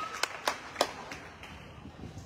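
A few scattered hand claps from spectators in a gym, several sharp claps in the first second that die away.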